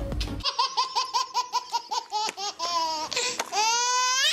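A baby laughing hard: a quick run of chuckles, about seven a second, then a long, high squeal of laughter that rises in pitch near the end.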